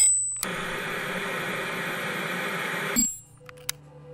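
Television static: an even hiss that starts a moment in, preceded by a brief high whine, and cuts off abruptly with a click about three seconds in, leaving a low hum and a faint tick.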